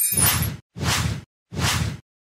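Three quick whoosh sound effects, one after another, each about half a second long with a short silence between them.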